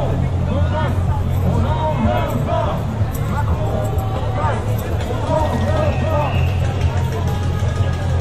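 Crowd of marchers talking and calling out over one another, over a steady low rumble.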